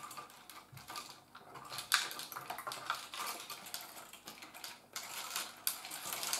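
Hands handling wires, blue insulated crimp connectors and ribbon cable among rows of stop switches, giving quick irregular small clicks and rustling, with a sharper click about two seconds in.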